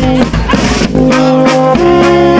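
A live brass band playing folk dance music, with sustained chords that break off briefly about a quarter of a second in and come back in about a second in.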